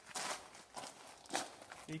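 Footsteps on loose gravel roof stones, about five crunching steps.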